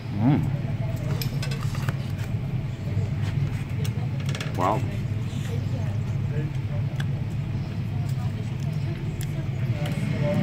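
A man's voice rising in pitch in an appreciative 'mm' just after the start and a 'wow' near the middle, over a steady low rumble like a nearby vehicle engine running.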